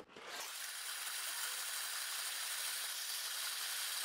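Loose LEGO bricks rattling steadily in a stack of 3D-printed plastic sorting trays as it is shaken to sift the smaller pieces down through the layers. The rattle starts a moment in.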